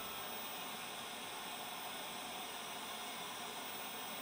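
Faint, steady hiss of TV static.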